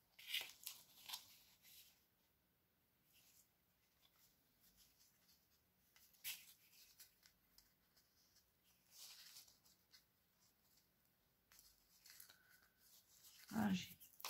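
Faint, short rustles and crinkles of paper being pressed and handled by fingers, in a few scattered bursts with near silence between them.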